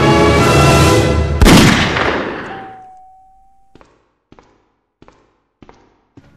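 Dramatic film score cut short by a single loud pistol shot about a second and a half in, which rings away over a second or so. A steady tone follows for about a second, then four short, evenly spaced knocks.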